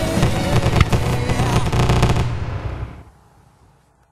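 A dense fireworks barrage, rapid bursts and crackling, with music mixed in. It fades out over the final second and a half.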